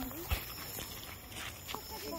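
Footsteps on gravelly dirt, with a single sharp click about a third of a second in and quiet voices in the background.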